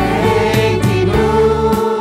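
Small mixed choir of men's and women's voices singing a hymn to electric keyboard accompaniment, with sustained chords under the voices.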